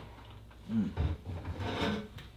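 A man's brief murmured "mmm" as he tastes food, mixed with rubbing and rustling of cardboard boxes and packaging being handled.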